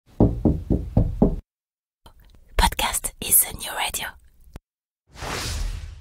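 Intro sound effects: five quick knocks about four a second, then a couple of seconds of hushed, whispery voice, then a short swell of hiss near the end.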